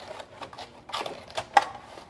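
Clear plastic sleeve crinkling and crackling as a Speck hard-shell laptop case is slid out of its cardboard box: a run of irregular sharp clicks, the loudest about one and a half seconds in.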